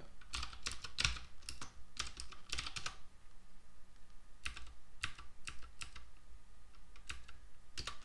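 Typing on a computer keyboard to enter a terminal command: a quick run of keystrokes for about the first three seconds, then slower, scattered keystrokes.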